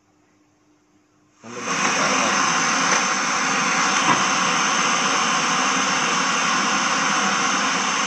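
FM radio of a Sharp GX-55 stereo combo giving a loud, steady hiss of static through its speakers, cutting in suddenly about one and a half seconds in. The tuner is set between stations, with no signal locked in.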